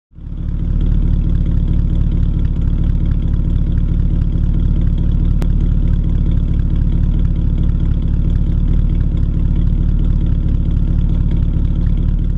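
1917 Hudson Super-Six inline six-cylinder engine idling steadily, heard close at the exhaust tailpipe.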